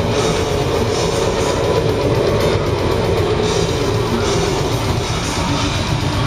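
Technical death metal band playing live: distorted electric guitars and a drum kit, loud and continuous, with a note held for the first few seconds.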